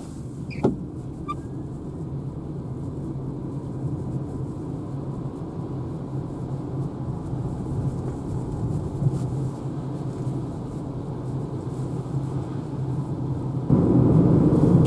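Inside the cabin of a 2013 Renault Zoé electric car speeding up on a wet road: steady tyre and road rumble that grows slowly louder as speed rises. A short click sounds about half a second in.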